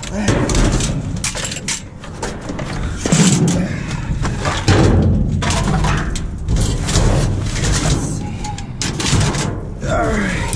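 Trash being rummaged through inside a metal dumpster: cardboard, paper and plastic rustling and clattering, with a few heavier thumps and knocks, the strongest about three and five seconds in.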